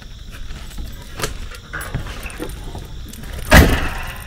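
Footsteps crunching on a gravel path with scattered small clicks and jingles, then one loud, brief thump with a rustle about three and a half seconds in.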